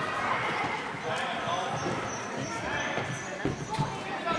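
Sports-hall ambience of a girls' indoor football match: children's voices calling and shouting throughout, with a few sharp thumps of the ball on the hall floor near the end.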